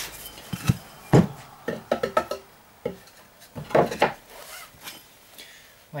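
Irregular handling knocks and clatters, wood on wood with light metallic clinks, as an axe head and wooden wedges are set into a plywood jig clamped in a vice.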